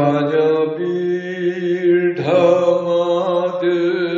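A man's voice chanting a hymn into a microphone in long, held notes, with a shift in pitch about two seconds in.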